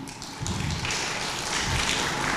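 Light applause from an audience, a steady patter of clapping that builds about half a second in and carries on.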